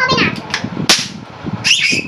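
A single sharp pop of a small rubber balloon bursting, just under a second in, with brief voices around it.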